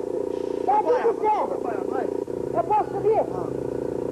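Indistinct, unintelligible voices with swooping, arching pitch over a steady buzzing hum.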